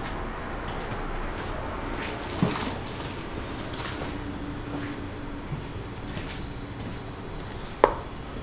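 Plastic cups and mixing tools being handled on a work table: a couple of sharp knocks, one about two and a half seconds in and one near the end, over steady room noise.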